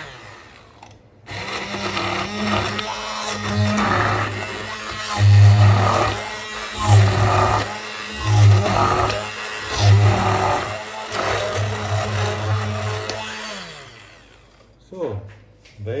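Hand-held immersion blender starting about a second in and running in a saucepan of thick, lumpy kaya, its motor hum swelling and easing about every second and a half as it is worked through the paste to smooth it. Near the end it is switched off and winds down.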